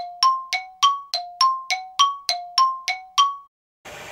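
A rapid run of bright chime-like dings, about three and a half a second, alternating between a lower and a higher note. It cuts off abruptly about three and a half seconds in.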